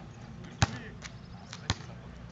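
Basketball dropping from the hoop and bouncing on an outdoor hard court: two sharp bounces about a second apart, the first louder.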